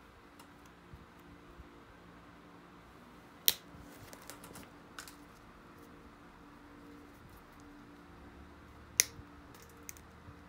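Obsidian flakes snapping off the edge of a hafted obsidian knife blade under a pointed pressure flaker, sharpening the edge. Two sharp clicks come about three and a half seconds in and near the end, with a few fainter ticks between.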